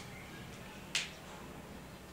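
A single sharp plastic click about a second in, from a bunch of whiteboard markers being handled in the hand; otherwise faint room tone.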